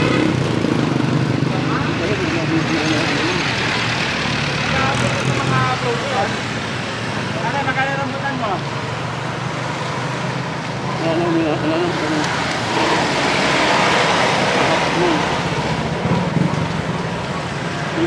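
Street traffic: a steady noise of cars and jeepneys on the road, swelling as a vehicle passes about two-thirds of the way through, with voices heard now and then over it.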